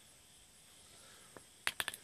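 Quiet outdoor background with a faint steady hiss, broken near the end by a quick run of four or five sharp clicks.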